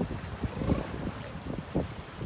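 Wind buffeting the microphone in uneven gusts, over the wash of surf breaking on rocks.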